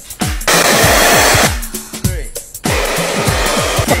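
Volumising spray hissing into the hair roots in one loud burst about a second long, then a hair dryer blowing from about two and a half seconds in.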